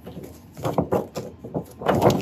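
Freshly laminated paper sheets being handled and flexed: a quick run of crackles and taps from the stiff plastic, loudest near the end.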